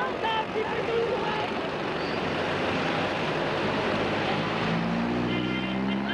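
Bus and street traffic noise with scattered voices. Near the end, a steady engine note rises slightly in pitch.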